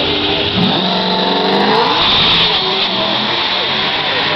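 Two Pontiac G8 sedans launching hard off the drag-strip line and accelerating away, the engine notes rising in pitch from about half a second in. One of the cars is modified with a cam, an intake and a 100-shot of nitrous.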